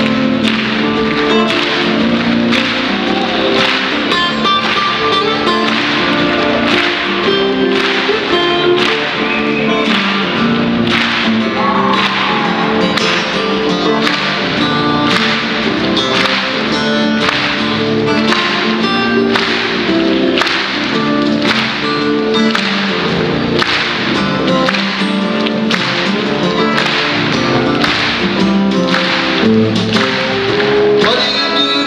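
A live band playing an instrumental passage: a steel-string acoustic guitar being picked over bass, with a steady drum beat of sharp hits a little over one a second.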